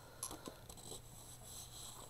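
Faint rustling and a few light taps of a hand moving over and smoothing the paper pages of a handmade altered book, over a faint steady hum.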